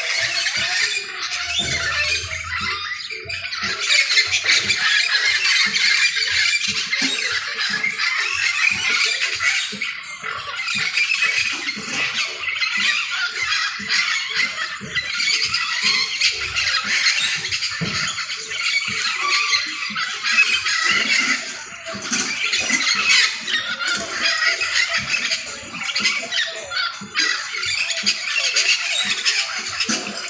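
A flock of parakeets squawking and chattering in a tree, many calls overlapping without a break.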